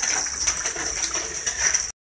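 Water dripping and splashing from a leaking tank whose ballcock float valve has come off, heard as a noisy wash of many small irregular ticks over a steady high hiss. It cuts off abruptly just before the end.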